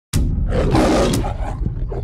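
The MGM lion roar: a recorded lion roaring once. It starts abruptly and peaks in the first second, over a low rumble.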